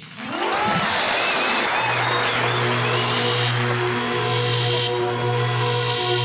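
Studio audience applauding as stage music starts. About two seconds in, a steady, low sustained tone comes in under the applause.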